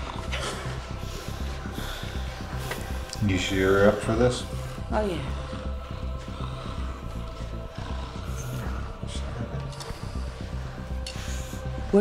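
Dark film score with a steady low pulsing drone. About three to four seconds in, a voice gives one long falling cry over it.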